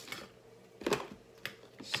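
A few brief rustles and knocks of small objects being handled while rummaging through a box of memorabilia, the strongest about a second in.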